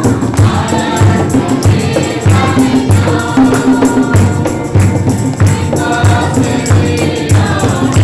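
Congregation singing a Hindi worship song together, with rhythmic hand clapping over a steady low beat.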